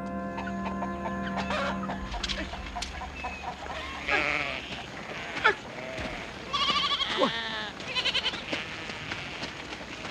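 A flock bleating: a series of separate, wavering bleats begins about four seconds in. Held music notes die away over the first two seconds.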